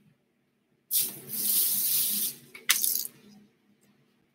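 Clothing rustling as garments are handled and set aside: one rustle lasting about a second and a half, then a brief second one.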